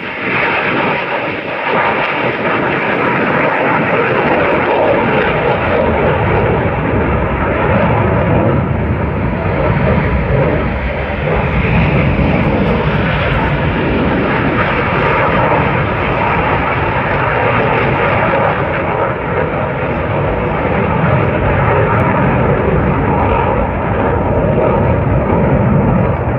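Airshow aircraft flying over: loud, sustained engine noise that swells up just after the start and then holds steady, with a faint steady whine in it.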